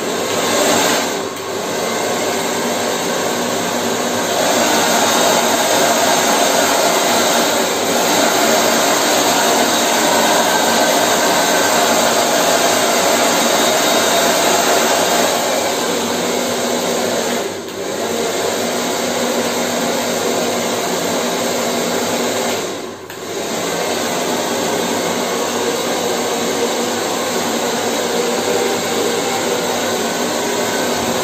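Hand-held hair dryer running steadily, blow-drying long hair over a round brush. Its motor and fan noise dips briefly three times.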